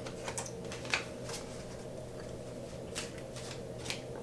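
Handling a deck of playing cards while chewing bubble gum: a handful of short, crisp clicks and snaps, several in the first second and a half and a few more near the end, with a quieter stretch between.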